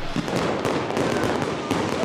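Fireworks going off: a dense, rapid string of pops and bangs with no let-up.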